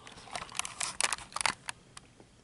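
A run of irregular, sharp clicks and crackles from close-miked handling, thickest about a second in.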